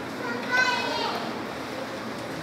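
A child's high voice, brief, about half a second in, over faint background murmur of the congregation.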